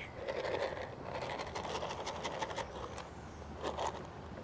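A goat rooting in a plastic bucket of feed pellets: pellets rustling and scraping with a string of small clicks and crunches.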